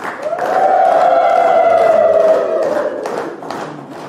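Voices singing one long held note that slowly falls in pitch, swelling early and fading out about three seconds in.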